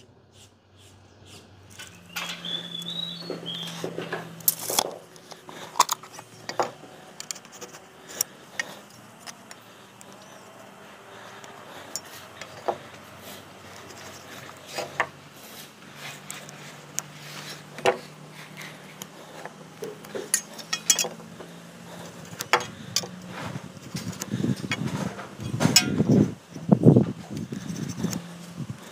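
Hand tools being handled on a wooden beam: a steel square and ruler clicking and clinking against the wood, with pencil marking and scattered light knocks. A faint steady low hum runs underneath.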